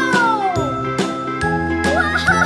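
Children's background music with a steady beat and held tones, over which a long falling, gliding tone slides down and ends a little under a second in, with a new one starting near the end.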